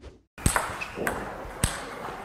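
A table tennis ball being struck: two sharp clicks about a second apart, the first about half a second in, each ringing briefly in a large hall.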